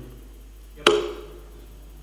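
A single sharp knock about a second in, close to the microphone, running straight into a short spoken "yep".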